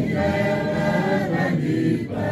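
A church congregation sings a hymn in Shona without instruments, with men's and women's voices together in held notes.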